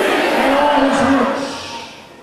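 A voice held in a long, drawn-out cry on one steady pitch, fading away near the end.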